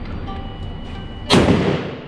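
A single gunshot about a second and a half in: one sharp report that dies away over about half a second.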